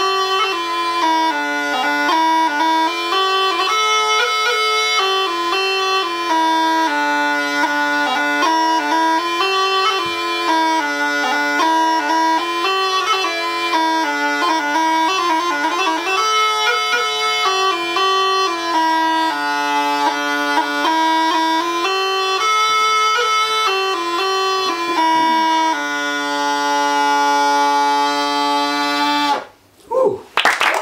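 Bagpipe playing a tune over a steady drone, the chanter melody stepping up and down, then holding one long note before cutting off sharply just before the end.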